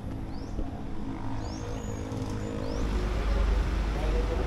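Outdoor background: a steady low mechanical hum with a deeper rumble building about three seconds in, and a few short, high bird chirps over it.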